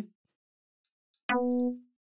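A single short test note from Ableton Live's Operator synthesizer on a sawtooth waveform, starting sharply just over a second in, holding about half a second and then fading out.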